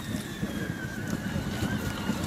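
Wind buffeting the microphone outdoors, a rough low rumble, with a faint steady high-pitched tone underneath.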